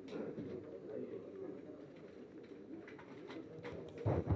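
Low, indistinct murmur of voices in the room, with a few faint camera shutter clicks, one at the start and several in the last second.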